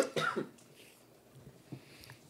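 A man coughing: two harsh coughs in the first half second, the cough of someone smoking.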